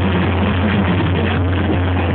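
Loud live music through a concert sound system, recorded on a phone in the crowd, dense and even with a held deep bass note underneath.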